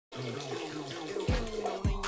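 A stream of running water splashing, under music with two deep bass drum hits about a second and a quarter and nearly two seconds in.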